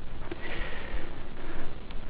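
Steady microphone hiss with a soft breath through the nose close to the microphone.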